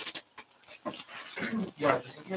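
Indistinct, muffled speech: a few short, unclear phrases, the clearest one near the end.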